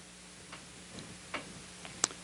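Quiet room tone with a faint steady hum and a few soft ticks, about half a second apart.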